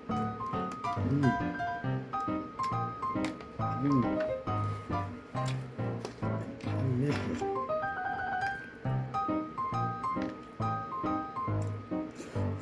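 Background music: a melody of short, stepping notes over a repeating low bass pulse.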